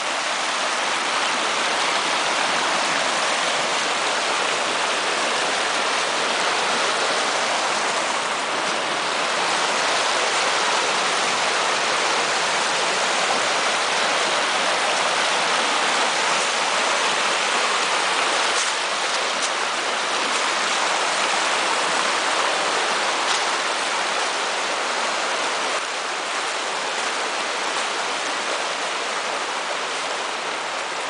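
Small rocky brook rushing steadily over stone riffles, a continuous whitewater rush, a little quieter in the last few seconds.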